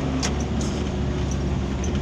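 Steady engine hum and road noise inside a moving vehicle's cabin, with one light click just after the start.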